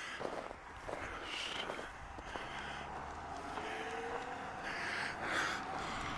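Faint footsteps on snow as a person walks, with a faint low hum and a slowly rising tone in the middle.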